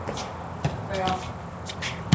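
Shoes scuffing and stepping on pavement, with a few short knocks from a small ball in play. A brief voice sound comes about a second in.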